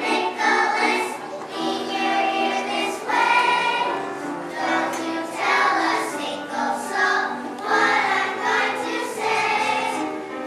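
Children's choir singing a song together, in phrases a couple of seconds long with brief breaks between them.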